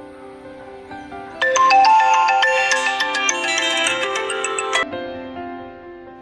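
Mobile phone ringtone: a quick melodic run of notes that starts about a second and a half in and plays for about three seconds, over soft background music.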